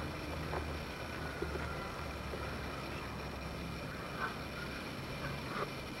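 Faint, steady low background rumble with no clear single source, broken by a few faint, brief high chirps about four and five seconds in.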